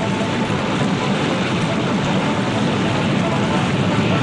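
A loud, steady rushing noise with no clear pitch or rhythm.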